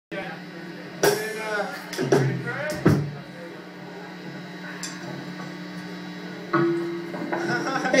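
A rock band's gear between songs: a few drum and cymbal hits with shouts around them over a steady hum from the amplifiers. A guitar note comes in and is held from about two-thirds of the way through.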